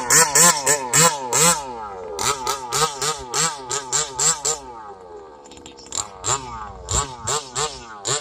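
Gas two-stroke engine of a large-scale RC dragster revving in quick throttle blips, about three a second, each one rising and falling in pitch. It settles lower for a moment midway, then blips again near the end.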